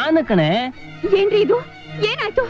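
A woman's voice in short, sharply sliding, wail-like exclamations over background film music.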